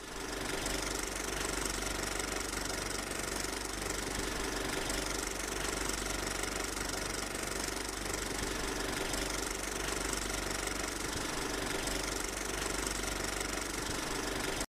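Steady mechanical running noise with constant hiss and a low hum, unchanging throughout.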